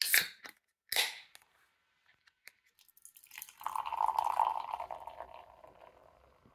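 A can of Leffe Ruby beer being opened: two short sharp cracks with a hiss, the first at the start and the second about a second in. From about three and a half seconds the beer is poured into a glass, a steady pour with fizzing foam that fades near the end.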